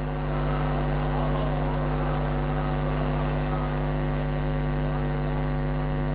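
Loud, steady electrical hum with many overtones, unchanging in pitch and level, of the kind a public-address sound system makes.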